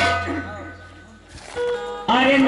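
A lull in live folk stage music: the low accompaniment fades out while two ringing metallic strikes sound, one at the start and another just before the singing resumes.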